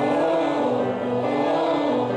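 Singing in a vocal warm-up exercise: long held vowel notes on a steady pitch.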